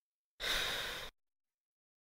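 A single breathy sigh from a person, lasting under a second and fading as it ends.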